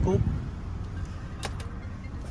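Zotye Z8's Mitsubishi engine idling, a low steady rumble, with a couple of light clicks about a second and a half in.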